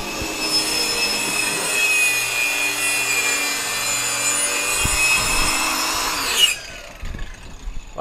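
Handheld circular saw cutting a white WPC (wood-plastic composite) board: a loud, steady high whine for about six and a half seconds, then winding down as the blade spins to a stop.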